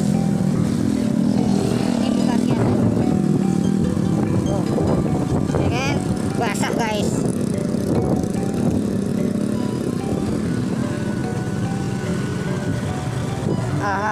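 Motorcycle engine running steadily with wind noise on the microphone, a constant low rumble while riding along a lane.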